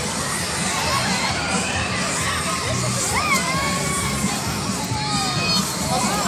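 A crowd of children shouting and squealing over one another, many high voices at once.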